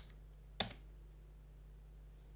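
A single sharp computer-keyboard keystroke about half a second in, the Enter key submitting a typed console command, over a faint steady low hum.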